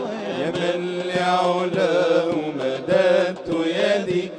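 Male vocal ensemble singing an Islamic devotional song (nasheed): a lead voice sings a long ornamented line without words while the other voices hold a low steady note, and a hand drum keeps time with light strokes.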